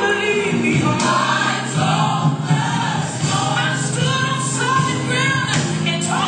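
Gospel music: a choir singing over steady, sustained low bass notes.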